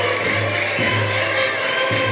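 Portuguese folk dance music, a cana verde, playing loudly. It has held melody notes over a steady low bass note and a quick, even beat of light percussion.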